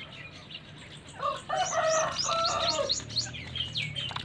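Gray francolins calling: a loud, harsh call starts a little over a second in and lasts about two seconds, over a quick run of short high chirps, about five a second, that goes on to the end.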